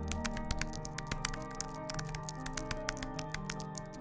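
Background music with soft sustained tones, overlaid by a quick, irregular run of keyboard-typing clicks, a typing sound effect.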